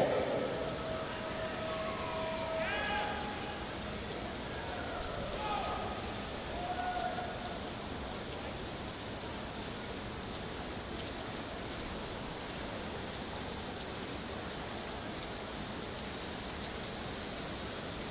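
Steady hiss of indoor swimming-pool race noise: backstroke swimmers splashing and a reverberant crowd. Faint distant voices come through in the first several seconds.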